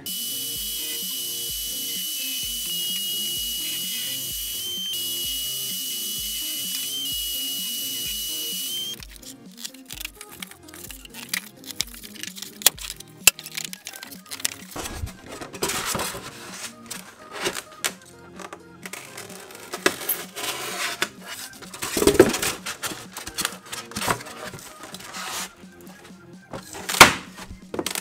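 Portable jobsite table saw running and cutting rigid foam insulation board, a steady whine that shifts slightly in pitch and stops abruptly after about nine seconds. It is followed by scattered knocks and rubbing as the cut foam boards are laid into the boat's floor and stood on. Background music with a steady beat plays throughout.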